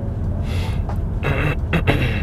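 Steady low rumble of engine and tyre noise inside a car's cabin while driving at about 40 km/h. Over it come short breathy sounds from the driver, about half a second in and again in the second half.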